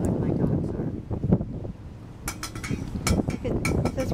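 Wind buffeting the microphone with a low rumble, and a run of short sharp clicks in the second half.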